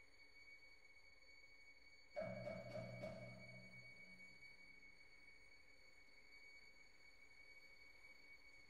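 A very quiet passage of modern orchestral music. A faint high tone is held throughout, and about two seconds in a sudden low percussive stroke, with a few quick follow-up strokes, rings out and fades over a couple of seconds.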